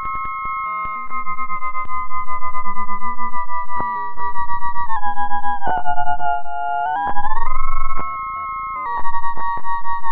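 Electronic synthesizer tone from a Pure Data oscillator whose pitch is set by a photoresistor: one held note sliding slowly down, dropping lower about five seconds in and rising back about seven seconds in. Its volume pulses about five times a second, an LFO wobble.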